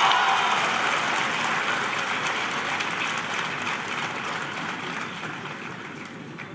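Audience applause, loudest as it begins and then slowly dying away.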